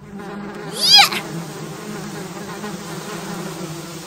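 Cartoon sound effect of a swarm of bees buzzing steadily. About a second in, a short squeal slides up and back down over the buzz and is the loudest moment.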